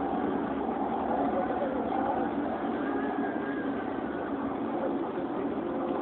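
Steady engine and road noise inside a moving vehicle's cabin, with faint voices under it.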